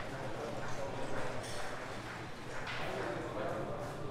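Indistinct voices in a billiards hall, with a few sharp clicks of billiard balls striking each other, about one and a half and two and a half seconds in.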